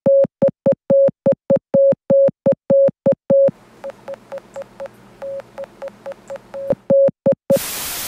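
Rapid electronic beeps on a single mid pitch, short and longer ones in an uneven pattern at about four a second. They are loud at first, quieter in the middle over a faint low hum, and loud again near the end, where a hiss of TV static cuts in.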